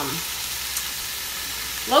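Food frying in the browning pot of a slow cooker, a steady sizzle.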